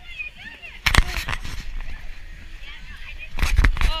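Outdoor ice rink: other skaters chattering in the background, broken twice by loud, brief rushing noise bursts, about a second in and again near the end.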